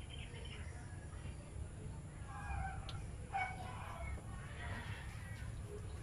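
Chickens clucking in the background, a few short calls between about two and five seconds in, over a low steady rumble.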